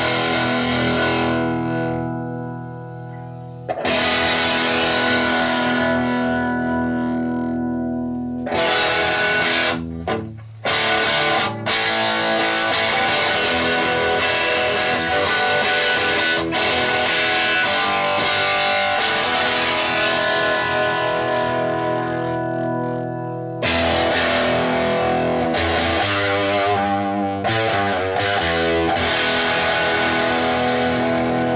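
Electric guitar (Reverend Charger HB, Railhammer Hyper Vintage pickups) played through the JTH Electronics Typhon Fuzz pedal into a Roland Cube 40GX amp, with the fuzz's silicon diodes switched in: heavily fuzzed chords that ring out with long sustain, struck again a few times, with short choppy strums in between.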